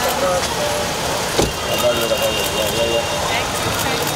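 A car door shut with a single thump about a second and a half in, over the chatter of several voices.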